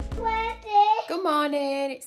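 A young child singing in a high voice, in long held notes that glide in pitch. Background music stops within the first second.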